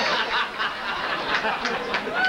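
A roomful of dinner guests laughing and chuckling in response to a joke.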